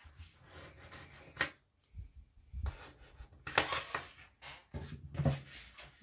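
Layers of cotton fabric being smoothed and aligned by hand on a tabletop, with irregular rustling and sliding. Plastic sewing clips are snapped onto the edges, with a sharp click about a second and a half in and a louder stretch of rustling and handling around three and a half seconds.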